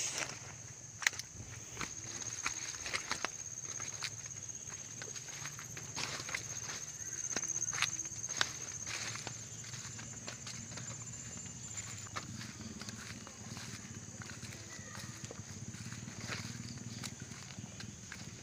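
Footsteps of a person walking along a dirt path through low leafy undergrowth, with irregular crunches and rustles of plants. A steady high-pitched insect drone runs beneath the steps and fades about two-thirds of the way through.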